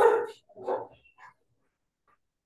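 A dog barking three times in quick succession, the first bark the loudest.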